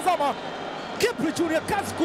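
Mainly speech: a football commentator's excited voice calling the play, with a short gap just before the middle.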